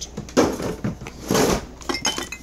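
Household items being handled and shifted in a cardboard box: two louder clatters, about half a second in and again around the middle, with small knocks and rustles between them.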